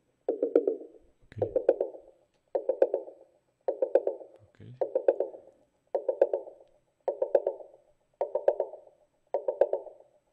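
A recorded tom drum playing back in a loop, a quick burst of four or five hits about once a second, heard through a narrow EQ boost around 500 Hz that is swept slowly upward. The boost exaggerates the tom's boxy, cardboard-like resonance near 500 Hz, the band marked for cutting.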